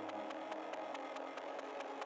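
Goa trance from a DJ mix in a breakdown with no kick drum: held synth tones over a fast, steady ticking beat. The low bass drops out early on.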